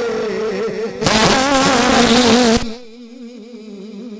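A man singing a long, wavering held note into a microphone in a devotional naat recital. About a second in, the voice turns much louder and harsh for a second and a half, then drops back to a softer sustained tone.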